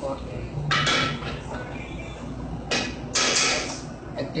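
Spatula stirring butter in a metal frying pan, in two bursts of scraping about two seconds apart.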